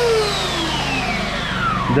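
Handheld electric belt sander's motor and belt winding down after being switched off, its whine falling steadily in pitch over about two seconds.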